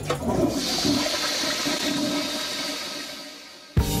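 Toilet flush sound effect: a rush of water that fades away over about three and a half seconds, then cuts off, with music starting just before the end.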